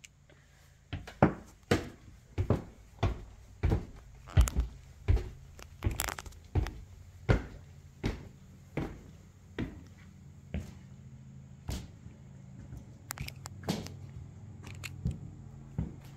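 Footsteps climbing bare wooden stairs and then walking on a plywood attic floor: a steady run of thudding steps, two to three a second, that thins to a few scattered steps for the last few seconds. A low steady hum runs underneath.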